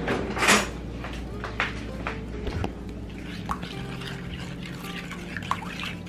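A spoon stirring batter mix and water in a glass mixing bowl, with a few light clicks of metal on glass, over soft background music.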